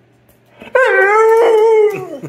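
Pit bull giving one drawn-out, howling 'talking' vocalization of about a second, starting a little under a second in, holding its pitch and then dropping at the end.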